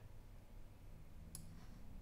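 Near silence: faint room tone with a single faint click of a computer mouse about a second and a half in.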